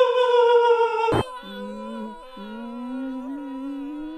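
A voice holding one long high note that sinks slightly, cut off sharply with a click about a second in. A quieter, lower hummed note then rises slowly over a steady higher tone.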